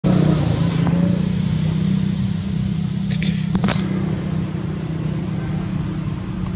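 A vehicle engine running steadily with a low hum. A brief sharp crackle comes about three and a half seconds in.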